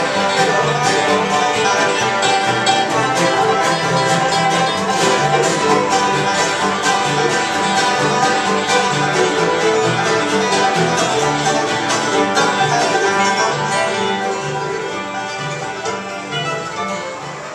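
Acoustic bluegrass band playing live without singing: five-string banjo picking, fiddle, upright bass and acoustic guitars over a steady bass pulse, growing a little quieter near the end.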